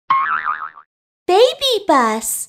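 Cartoon logo sting: a short warbling, boing-like sound effect, then after a brief pause a high cartoon voice calls out a quick three-syllable phrase.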